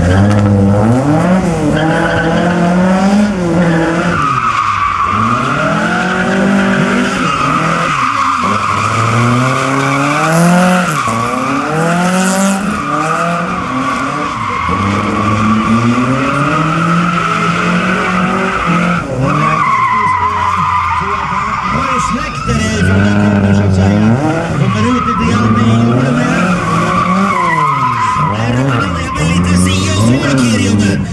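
Ford Sierra drift car sliding sideways at full throttle, its engine revving up and dropping back every few seconds while the rear tyres squeal continuously.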